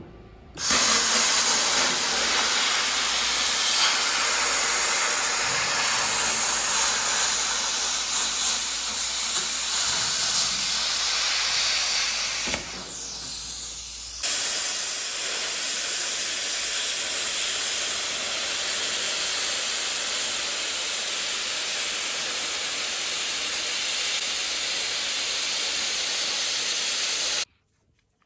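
Hand-held plasma cutter cutting through profiled steel sheet: a loud, steady hiss of the arc and air jet. It eases briefly about halfway through, picks up again, and cuts off abruptly just before the end.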